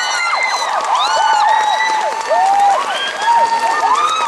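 Theatre audience applauding, with many high-pitched screams and cheers overlapping.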